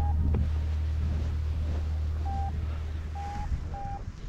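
Three short electronic beeps, each at the same steady pitch, come about two, three and almost four seconds in. Under them is a low steady rumble that fades out near the end.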